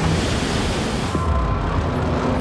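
Stormy open sea: heavy waves surging and breaking into spray, with wind and a deep, steady rumble.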